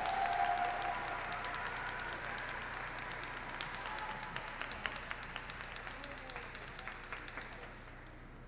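Audience applause in an ice rink, scattered claps dying away gradually as the skater takes her starting position.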